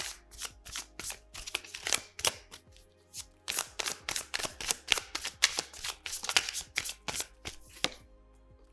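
A tarot deck being shuffled by hand, the cards striking each other in a quick, uneven run of short taps, several a second.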